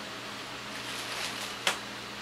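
Steady background hiss with a faint low hum, and one sharp click about a second and a half in.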